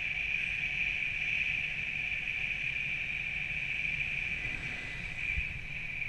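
Airflow rushing over the camera microphone during a tandem paraglider flight: a low buffeting rumble under a steady high-pitched hiss.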